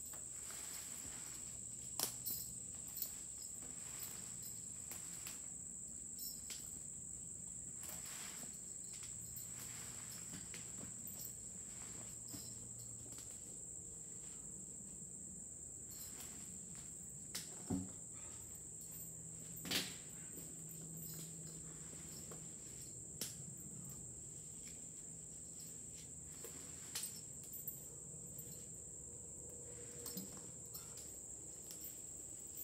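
Steady high-pitched drone of an insect chorus, with a few sharp knocks: one about two seconds in and two more near the middle.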